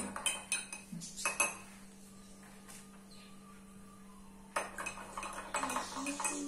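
A spoon clinking against the inside of a glass tumbler as liquid is stirred: quick repeated taps for about a second and a half, a pause, then more quick taps from about four and a half seconds in.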